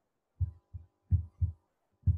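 Four dull, low thumps spread across two seconds, the last two the loudest and close together.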